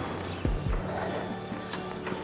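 Horse's hooves thudding on the sand footing of an indoor arena as it moves around the lunge circle: two dull hoofbeats about half a second in, over quiet background music.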